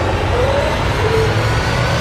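Loud, steady rushing noise with a faint wavering tone inside it: a sound-effect drone on a horror film's soundtrack.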